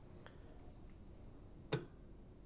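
Booster tank of a hydrogen torch machine being turned backwards on the machine's threaded stem: a faint tick, then near the end a short, soft thunk as the threads drop down and engage.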